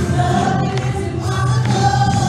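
Live worship music: several women singing together in long held notes over a full band with guitar, bass and drums.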